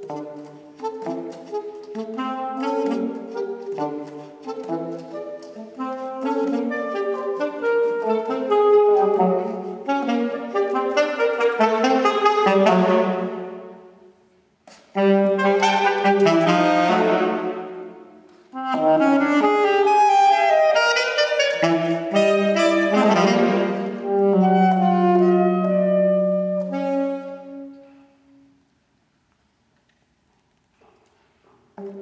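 Two saxophones playing a duet, with quick interweaving lines that build into loud phrases and break off briefly twice. The piece ends on a long held low note a couple of seconds before the end.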